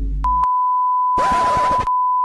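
A steady censor bleep, one unbroken beep tone, masking swearing; it starts about a quarter second in, with a short burst of noise over it about halfway through.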